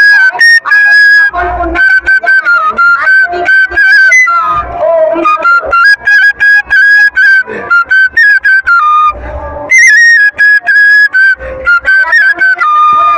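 Flute playing a stepping melody, with low drum beats every few seconds.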